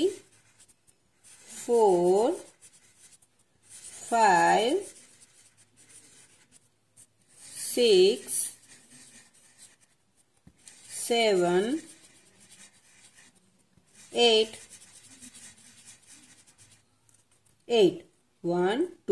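Felt-tip sketch pen rubbing and scribbling on paper as small circles are coloured in, a soft scratchy sound in the gaps between spoken numbers.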